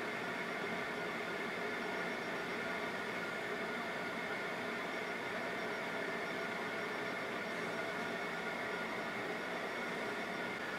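Steady mechanical whirring hum with hiss, unchanging throughout, from a motorized display turntable slowly rotating a figure on its base.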